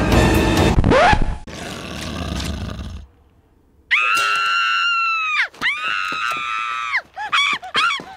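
Loud animated-film soundtrack that stops about three seconds in; after a moment of silence a cartoon boy lets out two long, high, steady screams, then a few short yelps.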